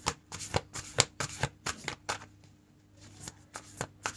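Tarot cards being shuffled by hand, a quick irregular run of card flicks and taps that pauses about two seconds in and starts again near the end.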